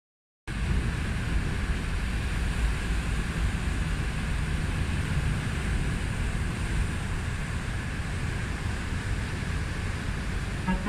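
Sea surf breaking on a rocky shore, a steady rush of waves with wind, starting abruptly about half a second in.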